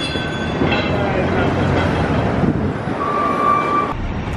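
Loud, steady city street traffic rumble, with a single steady high squeal about three seconds in that lasts under a second.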